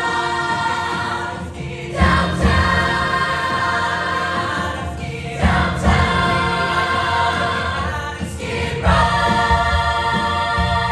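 A large musical-theatre cast chorus singing in unison and harmony, long held chords with a new phrase starting about every three and a half seconds.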